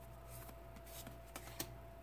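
Faint slide and flick of Pokémon trading cards as one card is moved from the front to the back of a hand-held stack, with a few light clicks, the sharpest about one and a half seconds in.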